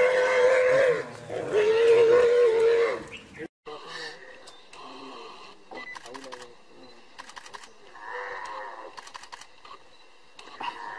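Wild boar squealing in distress as a tiger attacks it: two long, high, held cries in the first three seconds. After a sudden cut the sound drops to faint scattered clicks and rustling.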